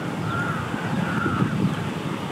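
Two harsh bird calls, each a short arched call of about half a second, the second about a second in, over a steady low rumble.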